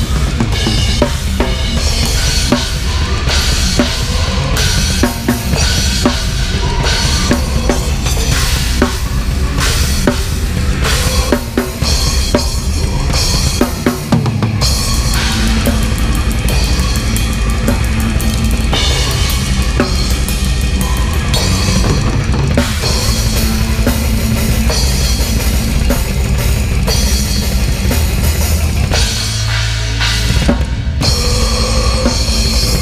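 Technical death metal played live on a drum kit with Sabian cymbals, heard loud and close from the drummer's position, over the band's guitars and bass. The drums run in fast, dense patterns of bass drum, snare and cymbals, with a very fast, even run of strokes through the middle.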